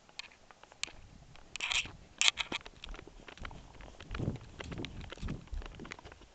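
Footsteps and the knocks and rustle of a handheld camera being carried, with two sharp clatters about two seconds in and heavier low thuds of steps in the second half.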